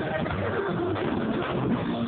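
Live gospel band playing, with a saxophone line wavering in pitch over the drum kit.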